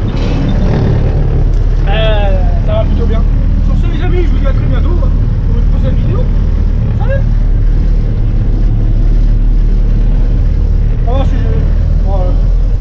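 An old Mercedes truck's diesel engine running steadily under load as it pulls a trailer of fir logs, heard from inside the cab as a loud, even low drone.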